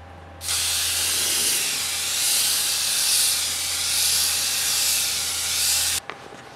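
Handheld jar sprayer spraying lacquer sanding sealer: a steady hiss that starts about half a second in and swells gently, over a low hum.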